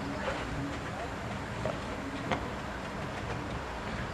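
Steady outdoor background noise with a low hum, wind on the microphone and faint distant voices, and one sharp click a little past the middle.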